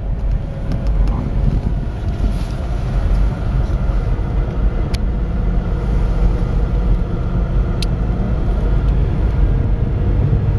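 Steady low rumble of a moving car's engine and tyres on the road, with two short sharp clicks about five and eight seconds in.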